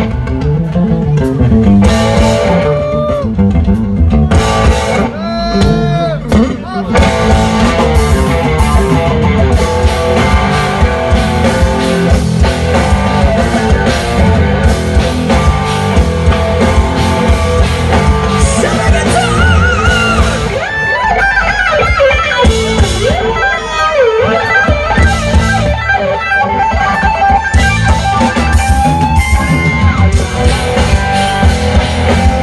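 Live rock band: an electric guitar solo with bent, wavering high notes over bass guitar and drums.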